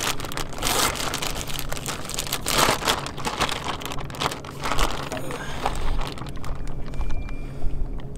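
A plastic zip-top bag crinkling and rustling in irregular bursts as hands open it and pull a sardine-wrapped lure out of the brine.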